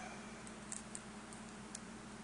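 Faint, scattered clicks and taps of fingers handling a small plastic toy figure and working its parts, over a steady low hum.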